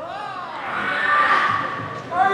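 Kendo kiai: fencers' long drawn-out shouts, swelling to their loudest about a second in.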